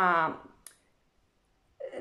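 A woman's voice trailing off on a long, falling word, then a single faint click and about a second of near silence before her speech starts again near the end.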